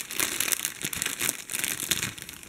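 Thin clear plastic packet crinkling in an irregular run of crackles as hands work it open around skeins of embroidery floss.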